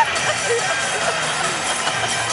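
Basketball arena crowd: many voices calling and cheering at once, over music from the arena's sound system.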